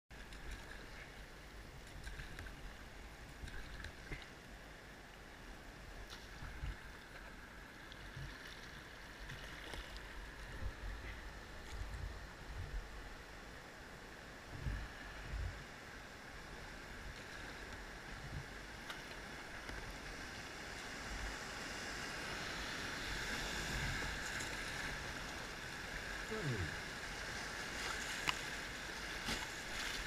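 River water rushing around a kayak running whitewater, growing louder through the second half as the boat reaches the wave trains, with occasional low thumps.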